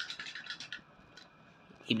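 Brief scratchy rustling of plush toys being handled on a table, a few quick irregular scratches that stop within the first second, then a man's voice starting to speak at the very end.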